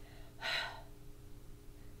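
A woman's short, breathy 'h' puff, about half a second in: the letter H's sound spoken as a breath in a phonics drill. A faint steady hum runs underneath.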